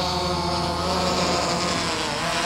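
DJI Phantom 3 Professional quadcopter's four brushless motors and propellers whining steadily as it climbs just after takeoff, with a slight dip in pitch near the end.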